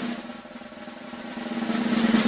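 Snare drum roll sound effect played from a soundboard, a continuous rapid roll that swells in volume toward the end, building suspense before a reveal.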